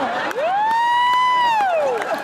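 A single long, high-pitched 'wooo' whoop from a person's voice: it rises, holds for about a second, then falls away.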